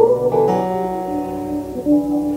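Live gospel band accompaniment: instrumental chords struck at the start and again about half a second in, ringing on as steady held notes between sung phrases.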